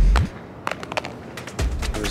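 An iPhone in a hard protective case hits brick pavement and clatters, several sharp clacks in quick succession over about a second. Music plays underneath.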